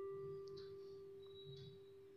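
Soft electronic background music: one pure, bell-like note held and slowly fading.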